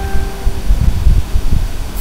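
Low, uneven rumble of background noise on the microphone, with a steady tone fading out in the first half second.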